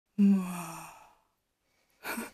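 A woman's voiced sigh: one breathy sound at a steady pitch that starts just after the beginning and fades away over about a second.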